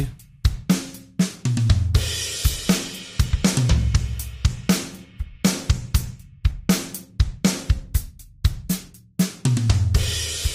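Logic Pro X Drummer virtual drum kit (SoCal kit) playing a steady beat. The Randomizer MIDI effect is scrambling its hit velocities, so the strokes land at uneven loudness.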